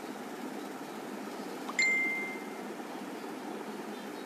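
A single short ding about two seconds in, one clear tone ringing out and fading in under a second, over a steady background hum of room noise.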